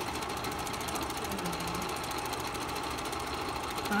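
Bell & Howell 456a 8mm film projector running: a rapid, even mechanical clatter from its film-advance mechanism over a steady motor hum.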